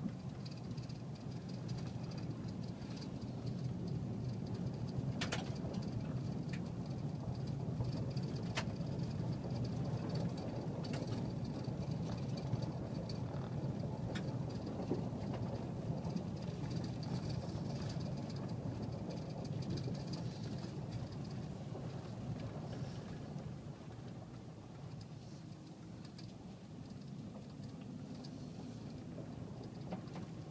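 Car driving, heard from inside the cabin: a steady low rumble of engine and tyres on the road, with a few sharp clicks in the first ten seconds. The rumble eases off for a while after about 23 seconds.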